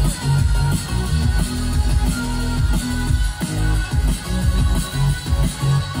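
Live electronic dance music from a DJ set, played loud through a festival PA, with a heavy, pulsing bass line.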